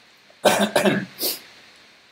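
A man gives a short cough, clearing his throat, about half a second in, then takes a quick sharp breath in.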